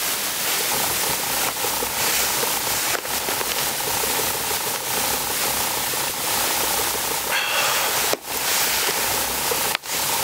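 A steady hiss of outdoor noise, broken twice by short dropouts near the end.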